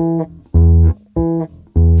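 Electric bass guitar playing four short, staccato notes about 0.6 s apart, alternating between the E at the 7th fret of the A string and the E an octave above at the 9th fret of the G string.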